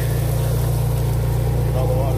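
Motor-driven water pump running steadily, a continuous low drone, as it floods the leach-field pipes with lake water.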